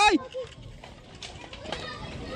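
A man's short cry of "Ay!" cuts off just after the start. Then only faint outdoor background noise follows, with a few light, indistinct sounds.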